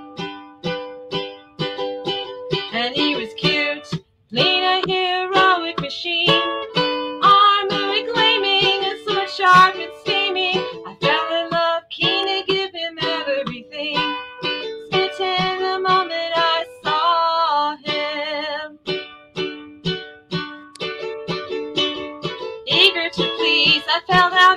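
Lute played with plucked notes and chords in a steady folk-song accompaniment.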